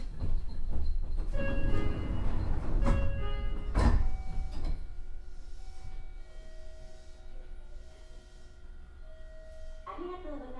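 Onboard running noise of a Meitetsu 4000 series electric train: a loud rumble of wheels on the rails with several steady whining tones. A sharp clank comes just before four seconds in, after which the running noise grows quieter while the tones hold.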